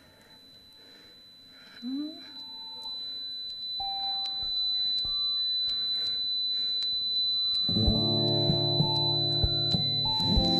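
A steady high-pitched tinnitus-simulation tone, heard over a Game Boy chiptune-and-guitar song whose high frequencies have been filtered away to mimic high-frequency hearing loss. It starts faint and grows louder as the volume is raised, and the muffled music comes in strongly, with full chords, near the end.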